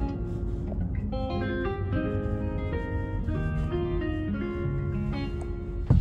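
Background music: a melody of plucked guitar notes, moving from note to note about twice a second.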